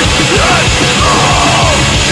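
Blackened d-beat hardcore punk: distorted guitars and rapid drumming, with a harsh yelled vocal over the top.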